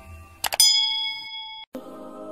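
A metallic bell-like ding, struck twice in quick succession, ringing on with a few clear tones, then cut off abruptly.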